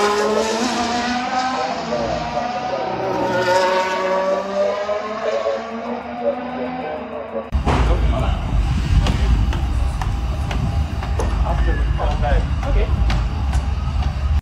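Formula 1 cars' V6 turbo-hybrid engines screaming past at speed, twice, the pitch falling as each goes by. About halfway through, the sound cuts to a loud low rumble scattered with short clicks and knocks.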